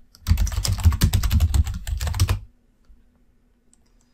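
Fast typing on a computer keyboard: a quick run of keystrokes lasting about two seconds, then it stops.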